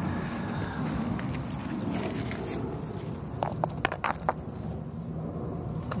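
Dry leaves and grass crunching and rustling as garden foliage is handled and pushed aside, with several sharp crackles in the middle.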